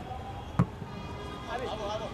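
A football struck once with a sharp thud about a third of the way in, then players calling out on the pitch near the end.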